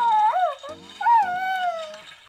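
Baby Yoda (Grogu) toy's creature voice cooing: two short, wavering calls that glide up and down in pitch, the second falling away near the end, over background music.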